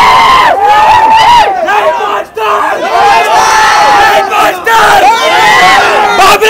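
A crowd of young men shouting and cheering together, many voices overlapping, with one brief lull a little over two seconds in.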